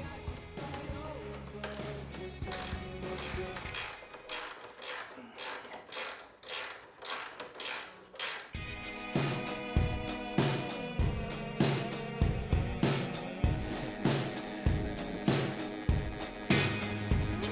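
Hand socket ratchet clicking in quick repeated strokes, about two or three clicks a second, as a crash bar's upper mounting bolt is run down. Background music plays underneath, and after about eight seconds the clicking stops and music with a steady drum beat takes over.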